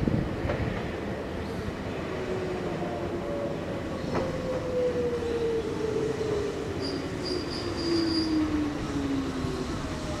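Nankai 'Tenku' sightseeing train arriving slowly at a station: a low rumble under an electric motor whine that falls steadily in pitch as the train slows. A few brief high-pitched squeaks come about seven to eight seconds in.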